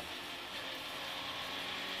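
Peugeot 106 rally car's engine and road noise heard from inside the cabin, running steadily in fifth gear at an even level.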